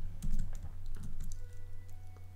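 Computer keyboard keys tapped several times in quick succession, followed by a short stretch of faint, thin steady tones over a low hum.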